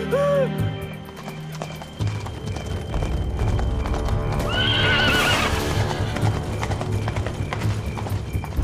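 Horses galloping, their hooves drumming fast and steadily from about two seconds in. One horse whinnies about halfway through, over dramatic music.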